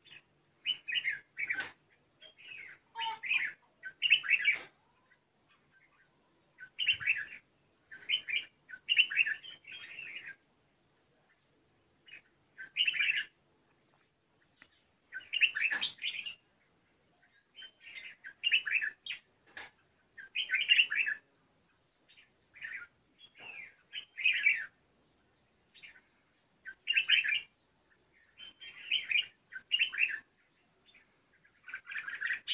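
Red-whiskered bulbul singing: short phrases of a few notes, repeated every second or two with brief gaps between them.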